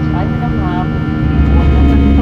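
Airbus A320 cabin noise during climb-out after takeoff: a steady jet engine drone with hum tones, heard from a window seat beside the engine. A deep low rumble swells about a second in, and a voice is faintly heard early on.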